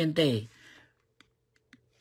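A man's voice for about half a second, then a pause broken by two faint, short clicks.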